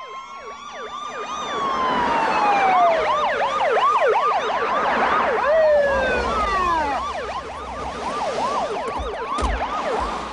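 Many police car sirens sounding at once, overlapping: fast yelping cycles mixed with slower wails that sweep down in pitch.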